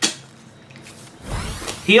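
A person sucking on a cut on the back of their hand: a short, wet sucking sound about a second in, after a click at the start.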